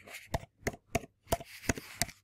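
Computer keyboard being typed on: about six separate key clicks, roughly three a second.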